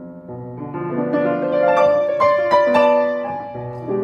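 Solo piano playing the opening of a jazz arrangement: chords in the low register, then a run of notes climbing higher and louder to a peak about two and a half seconds in, easing back down to a new low chord near the end.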